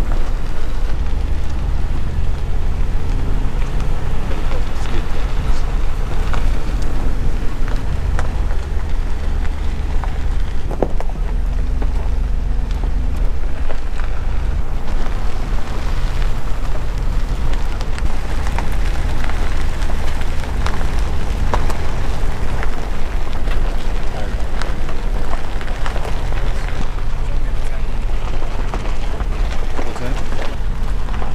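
A vehicle driving on a gravel dirt road: a steady low rumble from the engine and tyres, with scattered crackle and pops of gravel under the tyres.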